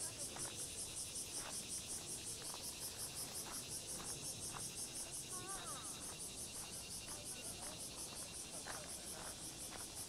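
A chorus of cicadas singing in the summer park trees, a high, evenly pulsing buzz that goes on without a break.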